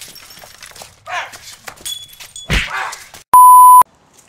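A loud, steady electronic beep tone of about half a second near the end, pitched around 1 kHz. Before it come a few brief voice-like sounds and light knocks.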